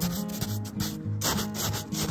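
A plate rubbing and scraping against snow close to the microphone, in several irregular strokes, over background music with steady, stepping notes.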